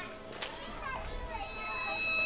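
Brief wordless voices, then the background music of the TV sitcom comes in about halfway through with a held note.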